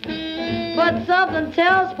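1945 big-band swing recording playing from a V-Disc record on a turntable: a held note, then a run of sliding, bending phrases.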